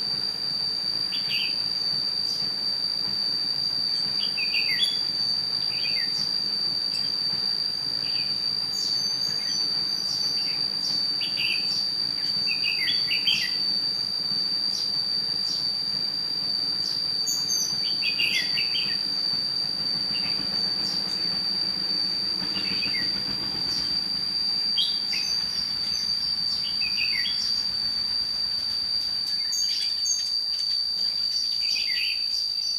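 Red-whiskered bulbuls calling in short, scattered phrases every second or two, over a continuous high-pitched insect drone.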